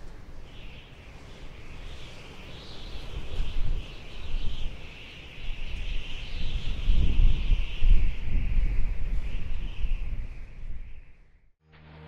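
Outdoor ambience: a continuous high, wavering chorus over a low, uneven rumble that swells in the middle, cutting off suddenly near the end.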